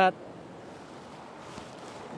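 Low, steady wind and ocean surf noise with no distinct knocks or events, after the last word of a man's sentence at the very start.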